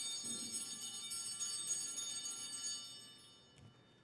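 Altar bells ringing in a shaken peal, marking the elevation of the chalice at the consecration. The ringing dies away a little after three seconds in.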